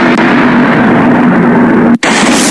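Explosion sound effect for a channel intro: a loud, steady rumbling noise with a low hum running through it, dropping out for an instant at the end.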